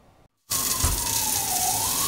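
A commercial coffee grinder starts about half a second in and runs with a loud, bright hiss. Over it a single wailing tone sinks and then climbs again.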